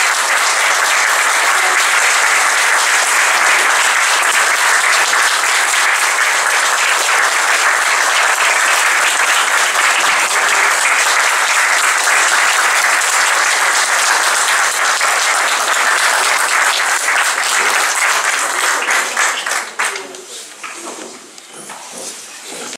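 Audience applauding: many hands clapping in a long, steady ovation that dies away near the end.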